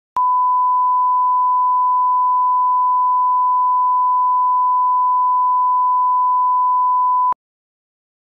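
A single steady electronic beep tone at one unchanging pitch, held for about seven seconds. It starts and cuts off abruptly, each time with a click.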